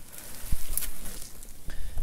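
Dry marsh reeds rustling and crackling as they are handled, with one sharp knock about half a second in.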